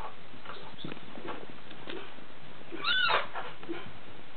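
A six-week-old Bengal kitten giving one short, high meow about three seconds in, its pitch rising then falling, with faint scattered clicks and taps around it.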